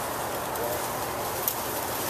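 A bird calling over a steady hiss of outdoor noise, with a short click about one and a half seconds in.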